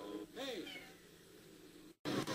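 A single short, high cry that rises and then falls in pitch, about a third of a second in, over faint film soundtrack background.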